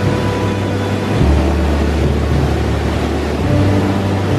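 Rushing mountain river pouring over a small cascade, a steady loud hiss of water, with background music whose low bass notes change about a second in and again near the end.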